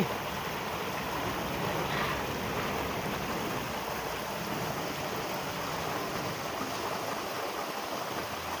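Shallow, rocky river water rushing steadily over stones and riffles.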